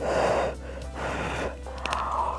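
Slurping a mouthful of noodles and sauce, sucked in three times, the first one loudest.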